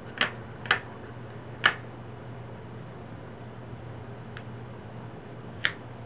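Clear acrylic stamp block clicking against an ink pad and the paper while rubber-stamping letters: three sharp clicks in the first two seconds and another near the end, over a faint steady low hum.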